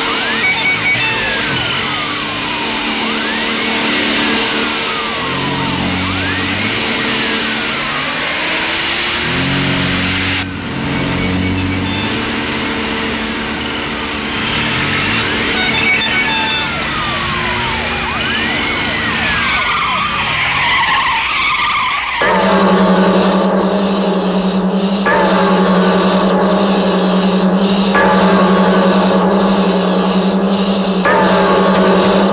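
Dramatic film background score: a series of falling, siren-like pitch sweeps over low sustained tones, giving way about two-thirds of the way in to a steady low drone with pulsing chords that shift every few seconds.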